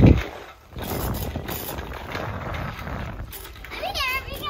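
Child's bicycle with training wheels rolling over asphalt, a steady rough clattering of tyres and training wheels, opening with a single heavy thump.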